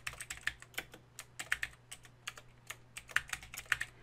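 Computer keyboard typing: a quick, irregular run of keystrokes, about six clicks a second.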